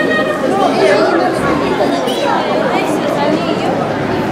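Indistinct chatter of many wedding guests talking at once in a large hall, with no single voice standing out.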